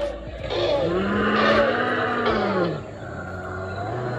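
Recorded dinosaur roar played at a dinosaur-model exhibit: one long, low call that rises and then falls in pitch, starting about a second in and lasting about two seconds.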